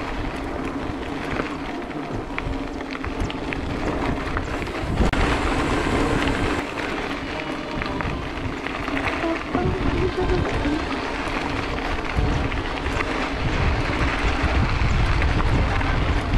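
Bicycle tyres rolling over a sandy gravel dirt track, with many small rattles and clicks from the bike, under wind buffeting the microphone. The low rumble grows heavier near the end.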